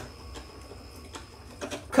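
Janome sewing machine coming to rest after tying off the seam with a lock stitch: quiet, with a few faint clicks and a faint high steady whine that stops about a second in.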